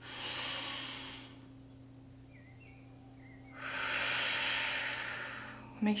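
A woman's deep breathing exercise: a breath in through the nose lasting about a second, a held pause, then a longer and louder breath out of about two seconds.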